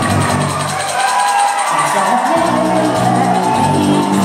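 Live band music in a concert auditorium, recorded from the audience. The low bass drops out about a second in and comes back after two seconds.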